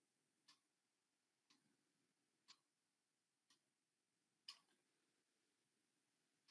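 Faint ticking of a clock over near silence: five short ticks about a second apart.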